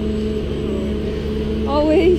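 Steady low machine hum with a few fixed tones, like an engine or motor running without change. A voice starts near the end.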